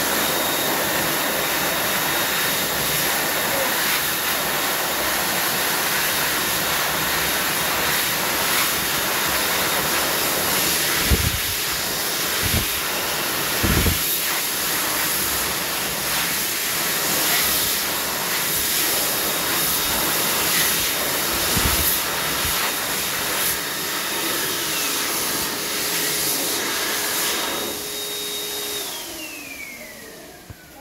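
Robus hot-air hand dryer blowing steadily, with a high motor whine over the rush of air. Near the end it cuts out and the whine falls in pitch as the fan spins down. A few low thumps come midway.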